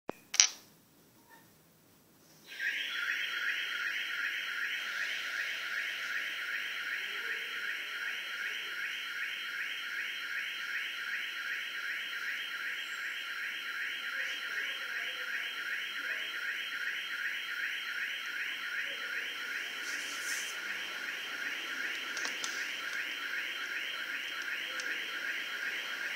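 An electronic alarm ringing: a single click, then, a couple of seconds in, a continuous high-pitched tone that pulses rapidly and holds steady.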